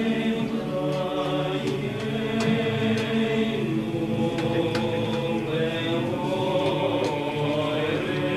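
All-male synagogue choir singing Jewish liturgical music, several voices holding long notes in harmony that shift slowly in pitch.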